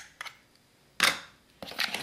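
A spatula against a plastic mixing bowl as egg yolk is stirred into dry cocoa and cornstarch powder: a light tap at the start, a sharp loud scrape about a second in, then steady stirring scrapes near the end.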